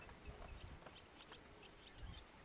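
Near silence: faint outdoor ambience with a few short, high bird chirps over a faint low rumble.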